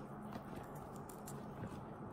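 Quiet handling of a steamed crab's shell by hand, with a couple of faint soft clicks as the meat is picked out.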